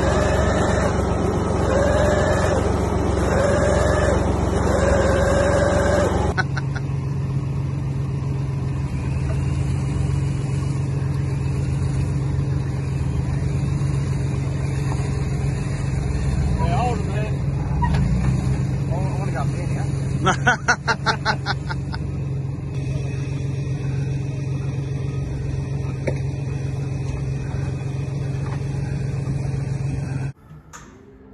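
Off-road 4WD engine running at low speed with a steady low note. For the first six seconds a wavering tone repeats about once a second over it. About two-thirds of the way through, the sound flutters briefly.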